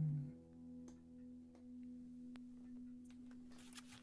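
The end of a song on acoustic guitar dying away: the last of the chord fades within the first half-second, leaving one faint steady note ringing on.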